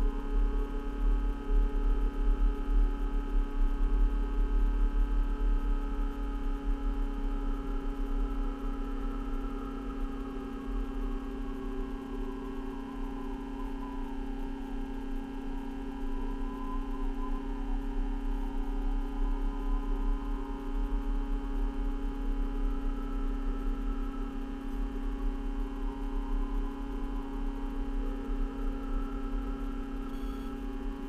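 Steady electrical hum made of several held tones, some wavering slowly in pitch, over an uneven low rumble.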